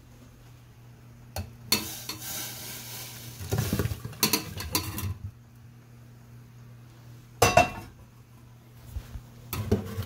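Boiled carrot chunks and their cooking water poured from a stainless steel pot into a mesh strainer in a steel sink: a few seconds of pouring and splashing with chunks tumbling in. Two sharp metal clanks a couple of seconds apart follow, the pot knocking against the sink or strainer.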